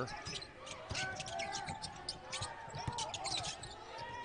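Court sounds of college basketball play: a basketball being dribbled and sneakers squeaking in short, sharp chirps on the hardwood, heard fairly quietly with faint voices from the court.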